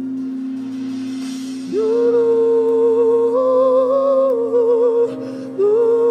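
Worship music: a steady keyboard pad note holds underneath. About two seconds in, a single voice comes in with wordless singing, long held notes that waver with vibrato. The voice breaks off briefly about five seconds in, then comes back on a higher note.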